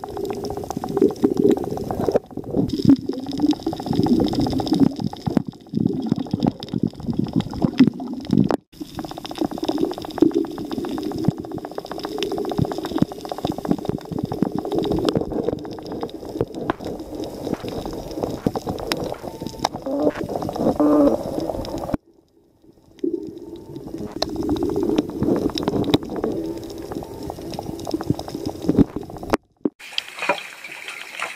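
Muffled underwater sound recorded by a camera while snorkeling over a reef: water rushing and bubbling with many small crackling clicks throughout. It drops out briefly about two-thirds of the way through.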